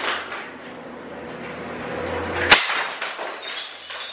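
Glass smashing: one sharp crash about two and a half seconds in, then a second of tinkling from the broken pieces.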